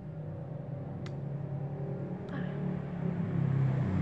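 A low engine hum, as of a motor vehicle, growing steadily louder, with a faint click about a second in.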